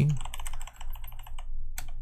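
Computer keyboard typing: a quick run of keystrokes, with two sharper key clicks near the end.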